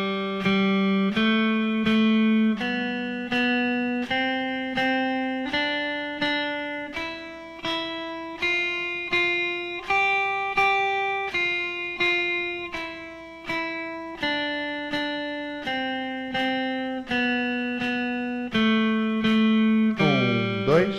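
Electric guitar picking a single-note reading exercise at 80 BPM on the top three strings: a stepwise line from G up an octave and back down, each note played twice, ending on a longer G. A metronome ticks on each beat.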